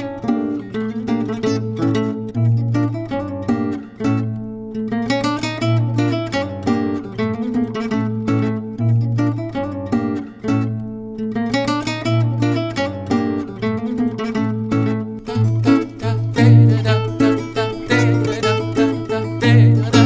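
Two nylon-string classical guitars playing a Bulgarian daychovo horo dance tune: a fast, busy plucked melody over a pulsing bass line, the bass dropping out briefly about four seconds in.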